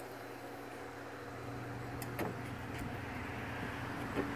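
A steady low electric hum, with a couple of faint clicks a little after two seconds in.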